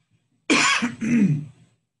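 A man coughing into his hand, then clearing his throat: a sharp cough about half a second in, followed by a voiced part that falls in pitch. It is all over in just over a second.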